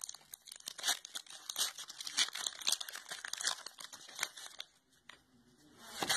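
Foil booster-pack wrapper crinkling and tearing open: a fast, dense run of crackles that stops about three-quarters of the way through, followed by a single click.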